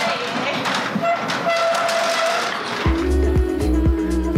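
Noise inside a passenger train carriage for about the first three seconds, then background music with a heavy bass beat starts and carries on.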